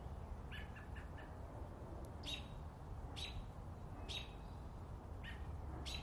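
A small bird chirping: a quick run of short chirps about half a second in, then single brief calls roughly once a second, faint over a steady low rumble.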